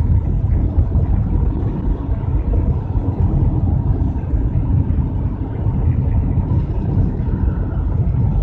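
Steady low rumble of a car being driven at road speed, heard from inside the cabin.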